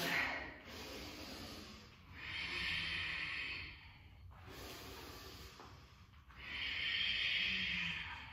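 A woman's breathing during a yoga flow through chaturanga into downward-facing dog: two long, audible breaths about four seconds apart.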